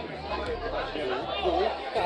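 Indistinct chatter of several people talking and calling out over one another on a football pitch, with a steady low rumble underneath.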